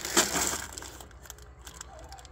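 Plastic bags of dried beans and split peas crinkling and rattling as they are handled. One loud crackle comes about a quarter second in, followed by scattered lighter crackles.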